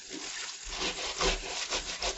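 A pineapple's rough rind being scrubbed with a scrubber under running tap water: repeated scrubbing strokes to get the dirt off before the fruit is soaked in a wash.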